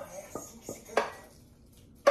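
Wooden spoon scraping and knocking against a frying pan as sauce is scraped out of it: a few short knocks, the loudest about a second in.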